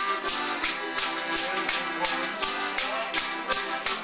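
A button accordion and an acoustic guitar playing a Newfoundland folk tune, with an ugly stick's bottle-cap jingles beating time at about three strokes a second.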